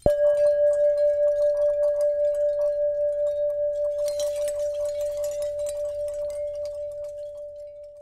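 A single bell-like chime struck once, ringing as one clear tone with a gentle wobble and fading slowly over about eight seconds; a fainter higher overtone drops out about halfway through.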